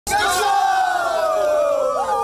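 A group of young men and women shouting together in one long rallying cry, the pitch sliding slowly down as it is held.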